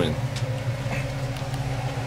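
A steady low machine hum with a fainter, higher steady tone above it.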